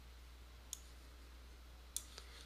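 Two computer mouse clicks about a second apart, pressing and releasing to drag a resize handle, over a faint steady low hum.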